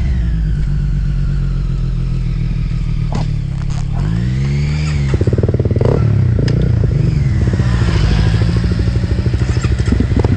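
Honda CRF250L single-cylinder trail bike engine idling, with a throttle blip rising and falling in pitch about four seconds in. It then pulls away, louder and pulsing, with a few mechanical clicks.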